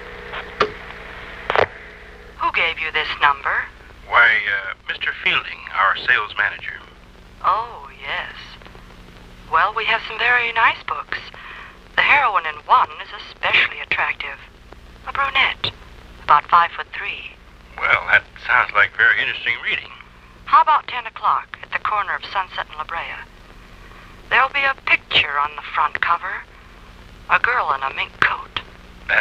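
A conversation heard over a tapped telephone line: thin, telephone-quality voices in turns, with a steady low hum beneath them.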